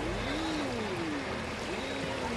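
Steady water sound of a swimming pool, water lapping and trickling at the pool edge, with faint slow gliding tones in the background.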